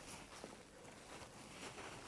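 Near silence: only faint rustling and light handling of a soft cloth being unwrapped from a bullet core in the fingers.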